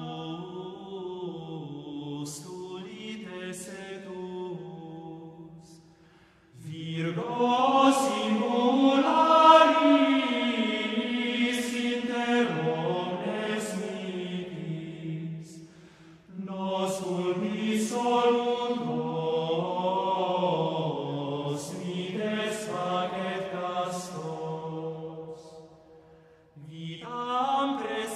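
A men's vocal ensemble singing unaccompanied Gregorian chant in a resonant church. The voices sing long, sustained phrases of about ten seconds, each ending in a short breath pause. The opening phrase is softer than the fuller ones that follow.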